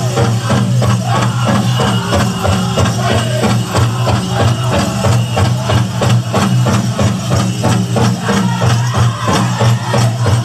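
Powwow drum group playing: a large drum struck in a steady beat under the singers' voices, with the jingle of dancers' bells and rattles.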